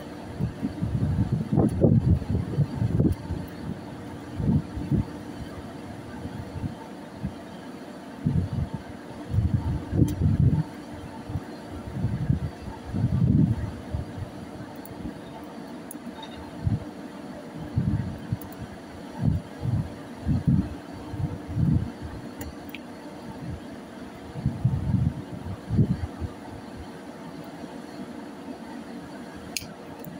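Steady drone of a ship's engines and machinery, with irregular low rumbling gusts over it.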